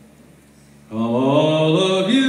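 A man's unaccompanied singing voice starting about a second in, holding one long drawn-out note that steps slowly in pitch, with no guitar.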